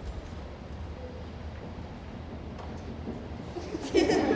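Low steady hum of room tone in a large hall while waiting in quiet, with a sharp knock near the end.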